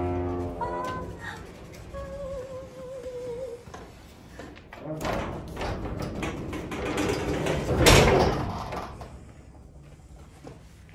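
Background music over the noise of a metal up-and-over garage door being swung open, with a loud knock about eight seconds in.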